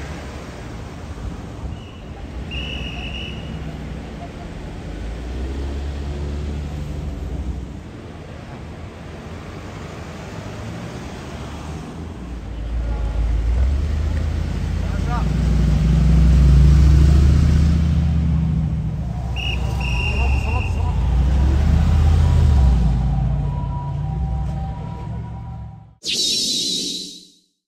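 Cars driving slowly past at close range in street traffic, a low engine and tyre rumble that builds about halfway in, is loudest a few seconds later and then eases off. Two short high-pitched beeps sound, one near the start and one about two-thirds of the way in.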